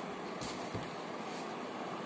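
Steady background hiss of room noise, with two brief faint bumps about half a second and three-quarters of a second in, from the phone or camera being handled as the lecturer reaches for it.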